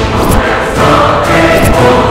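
Dramatic background score: a choir singing over dense music, with a few sharp hits.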